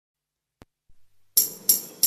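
Karaoke backing track of a Tamil film song starting after a faint click: two sharp, bright percussion strikes, tambourine-like, about a third of a second apart, beginning the song's intro rhythm.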